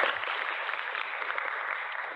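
Audience applauding, the clapping dying away toward the end.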